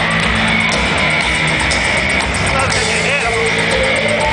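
Industrial rock band playing live at loud, steady volume through a theatre PA, with guitar and a singer's voice over the band, recorded from within the crowd.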